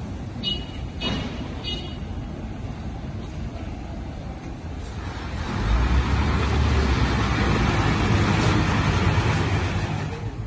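A large Isuzu police truck driving past close by: its engine and tyre rumble swell about five seconds in and stay loud for several seconds before easing off near the end, over steady street traffic. Two brief high-pitched chirps sound in the first two seconds.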